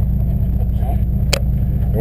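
Steady low drone of a sportfishing boat's engine running, with one sharp click past the middle.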